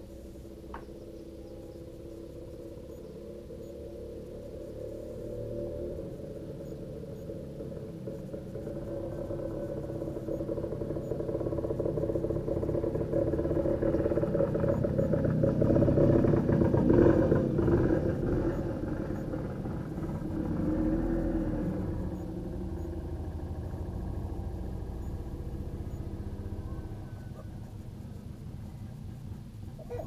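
A motor vehicle's engine running with a low rumble, growing louder to a peak about halfway through and then fading away.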